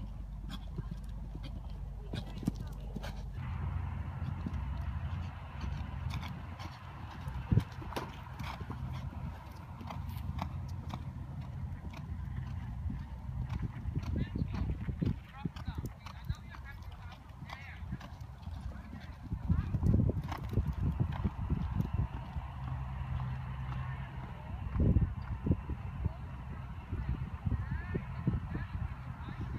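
Pony's hoofbeats at canter on a sand arena, a steady run of muffled strikes with a few louder thumps, over a low rumble and indistinct voices.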